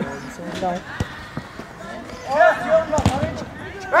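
A football kicked on the pitch: two dull thuds, one about a second in and a louder one about three seconds in. Men shout across the pitch.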